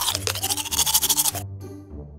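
Toothbrush scrubbing in quick back-and-forth strokes, stopping abruptly about one and a half seconds in, over background music.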